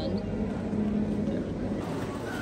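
Murmur of background voices over a steady low hum.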